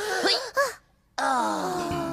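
A voice making drawn-out wailing 'ooh' sounds as part of a mock magic spell: a short falling call, a brief silence about a second in, then one long call that sinks and then rises in pitch.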